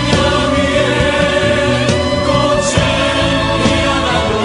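A choir singing a contemporary Christian worship song over full instrumental accompaniment, at a steady level.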